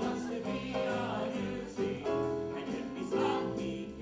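Musical-theatre number: a chorus of voices singing held notes over piano accompaniment.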